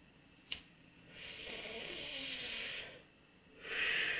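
A sharp click about half a second in, then a man's two long, noisy breaths, the second one louder, near the end, as when drawing on a cigarette and blowing the smoke out.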